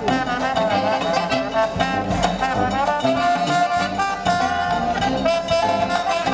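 Live New Orleans jazz band playing: trombone and saxophones together in an ensemble passage over a steady low beat.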